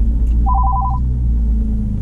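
Phone ringing for an incoming call: a rapid two-tone electronic trill lasting about half a second, over the low steady rumble of the car cabin.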